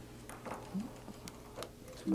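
A few faint clicks and taps from hands handling a glass ink bottle and its cap.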